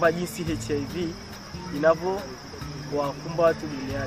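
Crickets trilling in one steady, unbroken high tone, with people's voices talking over it at times.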